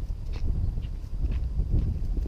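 Footsteps of a walker on a gritty tarmac lane, about two steps a second, under a constant low rumble on the microphone.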